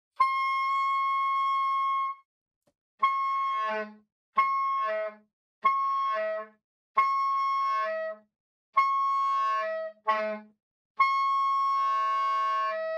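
Soprano saxophone sounding the high D: first one clean held note, then about six short notes on the same pitch with the low B flat and other overtones faintly breaking through beneath, as the D is voiced as an overtone of fingered low B flat. A longer held D returns near the end.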